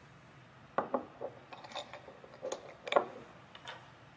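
Small labware being handled on a bench: a quick, irregular run of light clicks and knocks, the sharpest about three seconds in.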